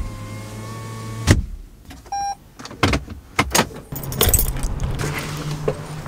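Inside a parked car: a steady low hum for about a second, a knock, then one short electronic beep. Several sharp clicks and knocks follow, then a bright metallic jingle of keys with rustling handling noise.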